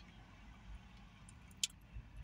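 Faint low rumble of a car heard from inside the cabin, with one short click about one and a half seconds in.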